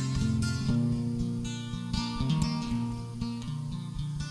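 Acoustic guitar strumming over held low notes, an instrumental break between sung verses of a slow Irish folk ballad.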